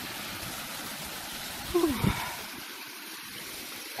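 Shallow stream of snowmelt water running steadily and spilling over the edge of a flooded road in a small falls onto rocks. A brief louder pitched sound cuts in about two seconds in.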